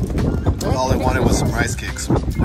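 Voices talking over a steady low rumble of wind buffeting the phone's microphone.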